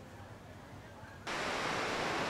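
Faint outdoor ambience, then about a second in an abrupt cut to a steady, louder rush of surf breaking on a sandy beach.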